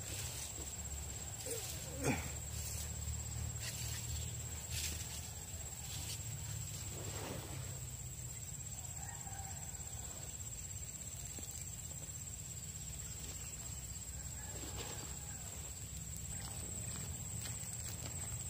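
A steady, high-pitched drone of insects, over a low background rumble, with a few faint clicks and rustles scattered through.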